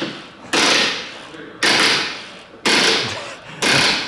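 Four harsh metallic bursts, about one a second, each starting suddenly and dying away, as a wrench is worked against rusted, seized bolts under the rear of a car.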